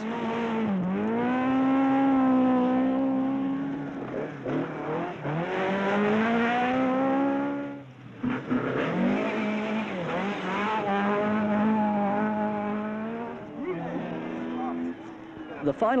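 Ford Escort rally car's engine revving hard at speed on a gravel stage. The pitch dips at each gear change and climbs again, with a short break about halfway through.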